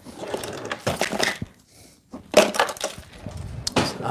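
Irregular clattering knocks and rustling of objects being handled and moved about, with a brief lull about halfway through.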